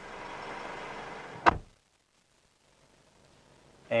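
Mitsubishi 4D56 four-cylinder turbo-diesel idling steadily at about 650 rpm as the injector small-quantity relearn begins, heard faintly. About a second and a half in there is one sharp knock, after which the sound cuts off suddenly.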